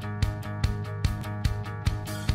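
Background music with a quick steady beat over sustained chords.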